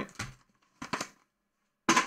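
A few brief rustles and taps of paper envelopes and a cardboard box being handled on a table, about a second apart, with quiet between them.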